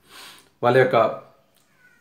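A man's voice: a short breath, then one drawn-out spoken word, with a very faint, brief high-pitched squeak near the end.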